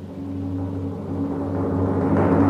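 Timpani drum roll sound effect, low and steady, swelling louder through the pause: a suspense roll before an award winner is announced.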